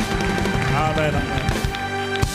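Live church band music with sustained keyboard chords, under the voices of a congregation.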